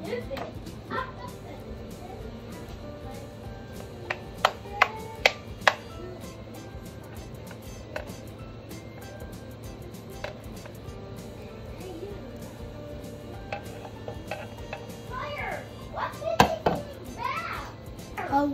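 Four sharp knocks about four to six seconds in as a plastic cup is tapped against a stainless saucepan to shake grated Parmesan into the pot, over background music.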